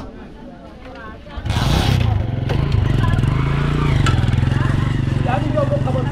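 A motorcycle engine starts about a second and a half in, with a brief noisy burst at the start, then keeps running steadily, louder than the voices around it.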